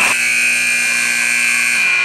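Ice arena scoreboard horn giving one steady, buzzing blast that cuts off sharply near the end, sounding as the game clock runs out.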